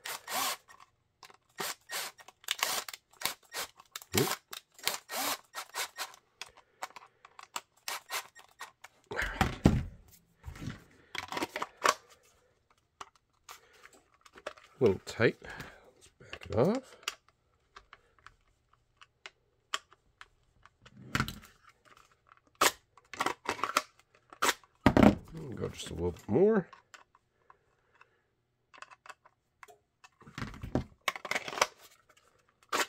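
Cordless driver running in short bursts, its pitch sliding up and down as it drives screws into the mounting hardware of a Kydex holster. Between the bursts come clicks and taps as the plastic shell and small parts are handled.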